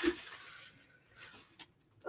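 Faint rustling and scraping as a napkin-decoupaged board is handled on a tabletop: a short rustle at the start, a softer one a little after a second in, then a small click.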